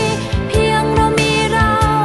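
Thai pop song playing, with a steady drum beat under a sung melody.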